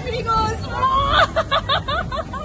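A woman laughing and shrieking, with a run of quick, rhythmic pulses about a second in, over a steady low rumble.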